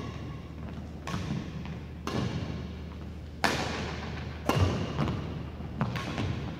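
Badminton rally: rackets striking the shuttlecock back and forth about once a second, each hit echoing in the gym hall. Footfalls on the wooden court sound between the hits, and the sharpest hit comes about halfway through.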